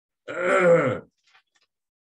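A man clearing his throat once: a single rasping sound under a second long that drops in pitch at the end.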